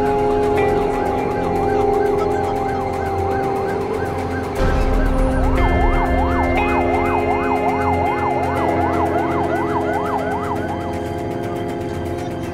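Emergency vehicle siren wailing in a fast rising-and-falling yelp. It grows louder and sweeps more widely from about halfway through, then stops shortly before the end.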